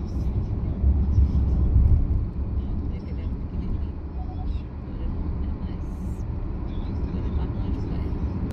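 Road noise of a car driving at highway speed, heard from inside: a steady low rumble of tyres and engine, heaviest in the first couple of seconds.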